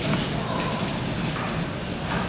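Hoofbeats of a pony pair pulling a carriage over an arena's sand footing.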